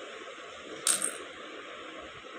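A single sharp click of a bead knocking against another about a second in, as stone and clay beads are threaded onto bracelet string, over a steady background hiss.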